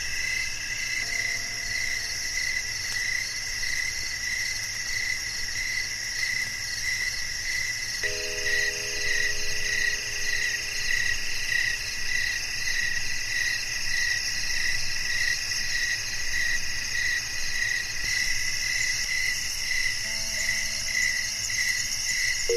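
Crickets chirping in a steady, pulsing chorus. A few faint, held music-box notes sound now and then, about a second in, near the middle and near the end.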